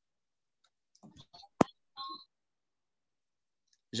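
A few faint clicks, then one sharp click about one and a half seconds in, followed by a brief, thin sound; quiet around them.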